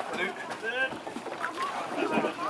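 People talking indistinctly; no engine is running.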